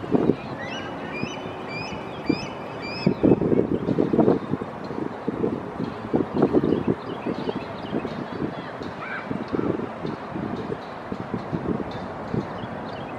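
Gusts of wind buffeting the microphone, with a bird calling a quick series of about six short high chirps in the first few seconds and one faint call about nine seconds in.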